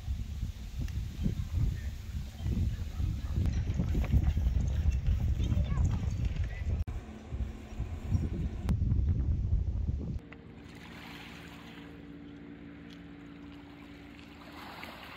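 Outdoor ambience: gusty wind rumbling on the microphone with faint voices for about ten seconds. It then cuts to a quieter steady low hum with small waves lapping.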